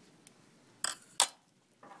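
Two short, sharp snips about a third of a second apart, the second louder: dissecting scissors cutting through muscle tissue.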